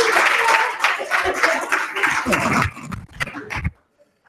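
Audience clapping, with voices mixed in. It thins out and stops about three and a half seconds in.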